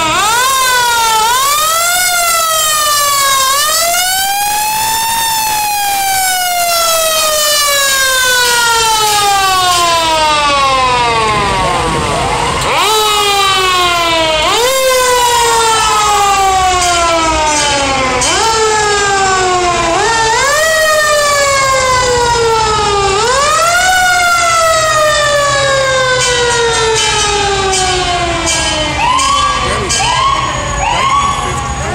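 Fire truck sirens wailing loudly, each rising quickly and then falling slowly, over and over, with several sirens overlapping at times. Near the end there are a few short, quick rising whoops.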